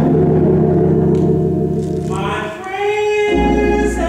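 Small gospel choir singing with keyboard accompaniment: a held chord fills the first half, then the voices come in about halfway and hold a note.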